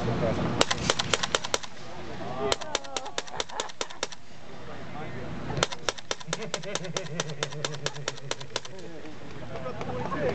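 Suppressed AK-pattern rifle in 7.62×39 firing in fully automatic bursts, about ten shots a second: a short burst about half a second in, a longer one about two and a half seconds in, and a long burst of about three seconds from just past the middle.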